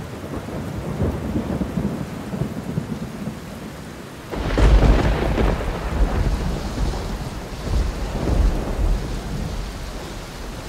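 Stormy weather: steady rain with a heavy crack and rumble of thunder breaking in about four seconds in and rolling on.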